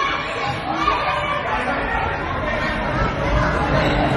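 Several voices talking and calling out over one another, the chatter of spectators and players at a futsal game.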